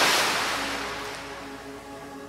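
Shallow sea water washing in around the feet and drawing back over sand, a loud hiss that fades away over the two seconds, with soft background music underneath.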